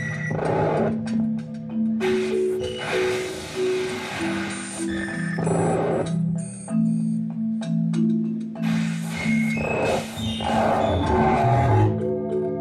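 Live electronic music from an audience recording, without vocals. Sustained low synthesizer notes step between pitches, while swells of hissing noise rise and fade every few seconds and short high electronic blips are scattered over the top.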